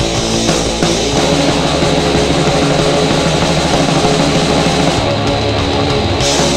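Crust punk band playing at full tilt: distorted electric guitar, bass and drums.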